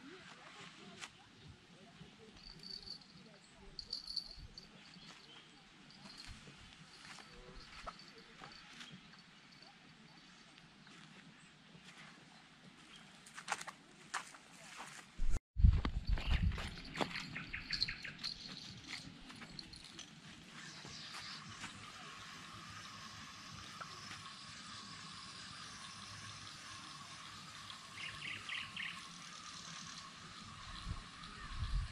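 Small birds chirp over quiet riverside air. About halfway a sudden heavy thump and rustling come as the angler strikes with the rod. After that a spinning reel is wound in with a steady, slightly wavering whir.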